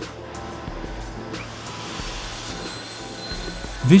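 Steady hum and rumble of tube-mill machinery under soft background music, with no distinct events.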